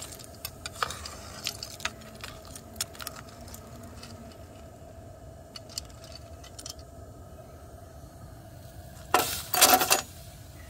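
A steel ladle scraping and clinking among the steel wheel-weight clips floating on molten lead alloy, with scattered clicks over the first few seconds. Near the end there is a loud metallic clatter as the skimmed hot clips are dumped into a metal tray.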